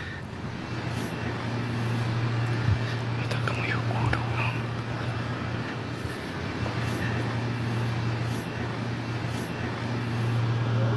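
Steady low hum under a haze of background noise, with a man's faint, hushed voice a few seconds in.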